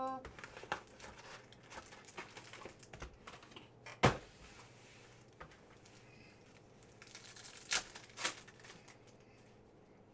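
Foil trading-card pack wrappers crinkling in the hands and being torn open, with scattered sharp crackles. The loudest tear comes about four seconds in, and two more come close together near eight seconds.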